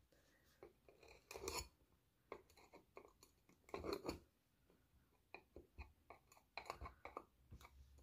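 Near silence broken by faint, scattered scratches and small crackles: a metal nail tool pushing dry reindeer moss under the rim of a glass cloche on a wooden base.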